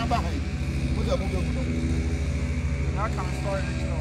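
A steady low engine hum, with a person's voice coming in faintly about a second in and again near the end.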